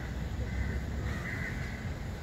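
Steady outdoor background noise with a low rumble, and a faint bird call about halfway through.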